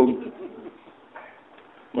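A man's voice trails off at the end of a word, then a pause of low background hiss with one brief, soft sound about a second in.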